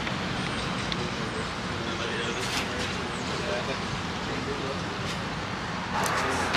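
Steady road traffic noise, an even background rumble of passing vehicles.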